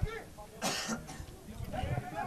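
Quiet stretch with a single short cough or throat-clear a little over half a second in, and faint voices in the background.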